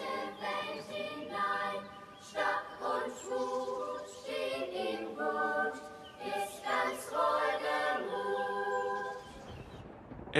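A group of girls singing a marching song together without accompaniment. The singing fades out near the end.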